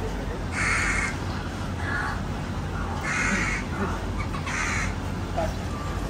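A bird calling four times in a row, short harsh calls about a second apart, over a low steady hum.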